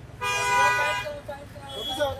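A vehicle horn honks once, a steady single-pitched tone lasting just under a second, starting a moment in.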